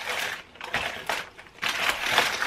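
Cardboard advent calendar doors being pushed and torn open by hand: a few short bursts of tearing, crackling card.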